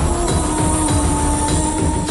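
Dramatic background score: long held tones at a few fixed pitches over a low, pulsing rumble.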